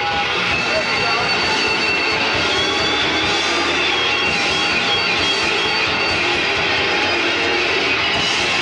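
Death/thrash metal band playing live: distorted electric guitars, bass and drums in a dense, steady wash of sound.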